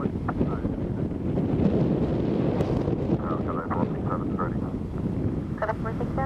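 Steady low rumble of a Boeing 777 freighter's GE90 jet engines as it rolls out along the runway after touchdown, mixed with wind buffeting the microphone.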